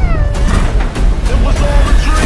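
Trailer music with a heavy bass bed, over which a high, squeal-like animal cry falls in pitch at the start, followed by a few shorter pitched cries: the vocalisations of a young ape.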